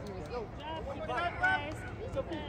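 Overlapping voices of spectators and players talking and calling out at once, with no clear words, and one louder call about one and a half seconds in.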